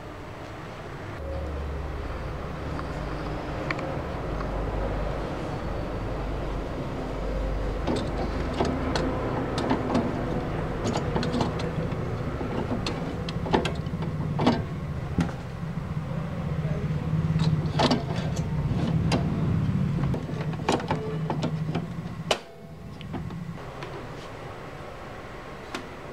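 Ink cartridge being handled and pushed into the carriage of an HP DeskJet Ink Advantage 3835 printer: a run of sharp plastic clicks and taps over a steady low hum, with a deep rumble earlier on.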